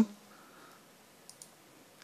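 Two faint computer mouse clicks close together, about a second and a quarter in, over quiet room tone.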